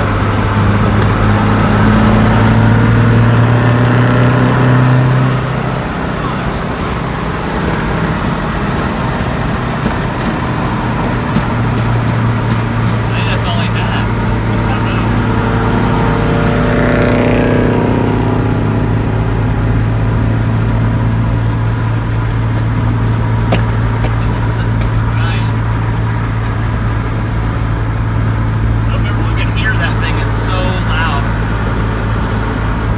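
A 2005 Ram 2500's 5.9 Cummins diesel, heard from inside the cab with the window open, pulling hard for about the first five seconds and then running steadily at road speed, with wind and road noise. About halfway through, another car's sound rises and falls briefly as it passes alongside.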